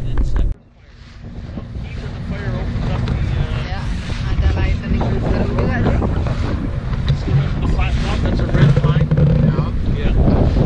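Motorboat running across a lake, engine hum under heavy wind rushing over the microphone. After a sudden dip half a second in, the noise builds back up over the next couple of seconds and holds steady.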